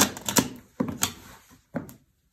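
A high-heeled shoe crushing crunchy dry food on a tiled floor: a series of sharp crunches and crackles, about five, as it breaks into crumbs.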